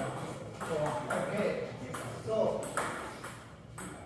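Table tennis ball bouncing several times in short, irregular clicks, with people talking in the background.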